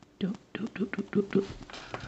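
A person's voice speaking softly, half-whispered, in quick short syllables, with a short hissing sound near the end.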